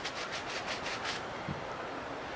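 Shoe-cleaning brush scrubbing foaming cleaner into a black sneaker in quick back-and-forth strokes, about six or seven a second. The strokes fade out a little over a second in.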